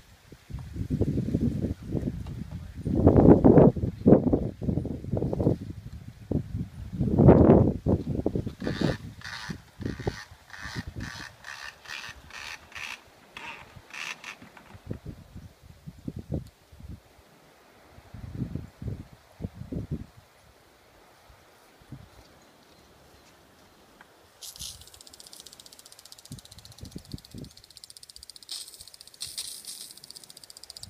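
Low rumbling gusts of wind on the microphone for the first several seconds, then a retractable garden hose reel's latch clicking evenly, about two and a half clicks a second, as the hose is pulled off it. About 24 seconds in, a steady hiss begins as water sprays from a lawn sprinkler on the hose.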